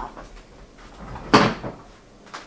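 A single wooden-sounding clunk a little past halfway through, fading quickly, as a dressmaker's dress form is handled and turned around on its stand.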